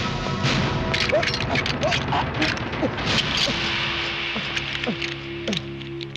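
Action-film background score with a run of sharp, percussive hits and crashes layered over it.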